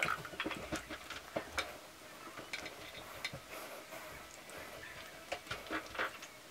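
Faint, scattered small clicks and light scraping of a tap's metal headgear and its washer being worked in the fingers.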